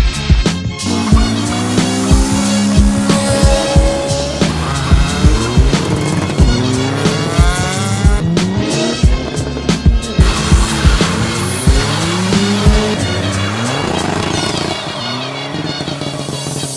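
Cars accelerating hard down a drag strip, their engine notes rising and dropping back again and again as they shift through the gears, mixed with music that has a heavy beat.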